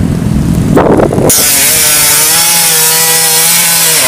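Two-stroke dirt bike engine revved hard: it jumps to high revs about a second in and holds there with a rasping hiss, while the bike struggles for grip in mud on a steep slope.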